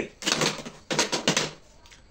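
Plastic payphone handset being hung up: a quick run of clicks and knocks as it clatters onto its hook.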